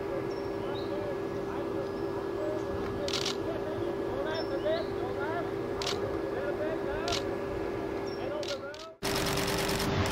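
Camera shutter firing in short bursts, four or five times, over a steady hum. Just before the end the sound cuts out and gives way to a louder steady rush.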